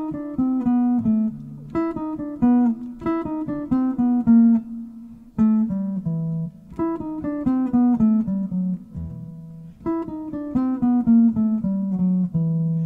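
Archtop jazz guitar playing single-note runs that mix the E blues scale with the bebop harmonic minor scale. There are six short phrases, mostly falling, one every second or two, and the last ends on a held low note.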